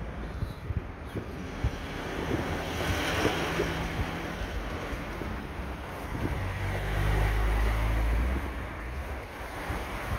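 Outdoor street noise: wind buffeting the microphone over a steady background of traffic. A low engine rumble swells to the loudest point about seven seconds in, then fades.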